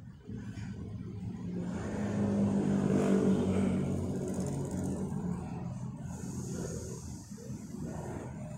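A motor vehicle engine passing, rising to a peak about three seconds in and then fading, over a steady low hum.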